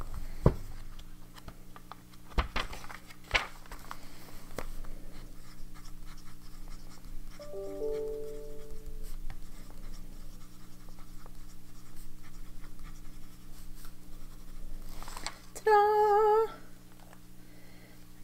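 Visconti Homo Sapiens Bronze Age fountain pen writing on notebook paper, the nib scratching lightly, after a few clicks from the notebook being handled in the first seconds. A steady low hum runs underneath, and a short pitched, wavering hum sounds about two seconds before the end.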